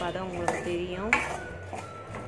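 Metal ladle stirring chunks of raw mango and tomato in a metal kadai: scraping and clinking of metal on metal, with sharp knocks against the pan about half a second and a second in, followed by a faint ring.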